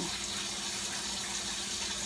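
Pot of cabbage cooking on the stove, giving a low, steady watery hiss with a faint hum beneath it.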